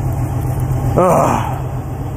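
An old motorhome's carbureted engine idling steadily and smoothly, with a short vocal sound about a second in.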